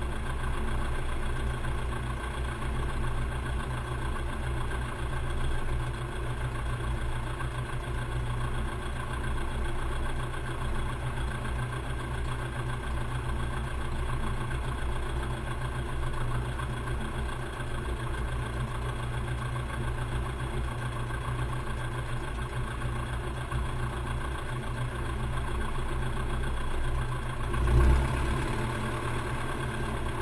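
Piper J3 Cub's propeller engine idling steadily on the ground, with a brief louder swell near the end.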